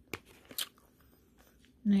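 Two short clicks of someone eating rice noodles close to the microphone, then a woman's voice starts near the end.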